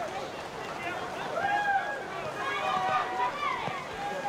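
Indistinct voices at a rugby league ground, one raised voice carrying over a steady background of stadium crowd noise.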